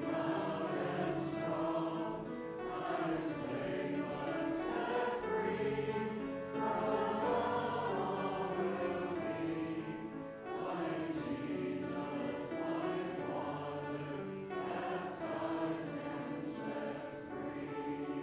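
A group of voices singing a church hymn together, steadily and without pause.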